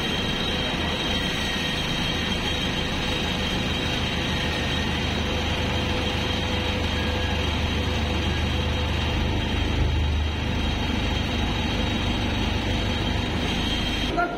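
Diesel engine of a JCB backhoe loader running steadily inside a tunnel, as one continuous loud machine din. Its low note shifts about nine seconds in as the boom works.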